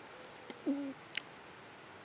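A man crying quietly: a short low note about two-thirds of a second in, then a sharp sniff.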